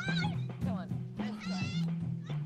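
Short, very high-pitched calls of young children, one rising squeal at the start and a wavering call a little past halfway, over soft background music with held low notes.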